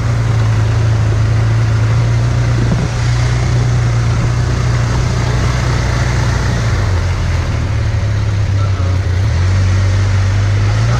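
Side-by-side utility vehicle's engine running steadily while driving across rough, wet ground, with an even rushing noise over its hum; the engine note dips slightly late on.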